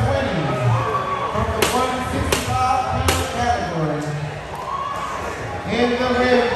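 People talking in a large, echoing hall, with three sharp knocks about three-quarters of a second apart near the middle.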